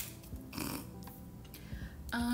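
Tarot cards handled on a wooden table: a light tap near the start and a soft scraping rustle about half a second in, as the cards are laid and slid into line. Quiet background music with steady held tones underneath.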